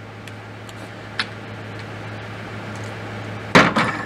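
Light clicks from handling an AR-style pistol fitted with an SB Tactical folding brace adapter, then a loud clunk near the end as the gun goes down on the table.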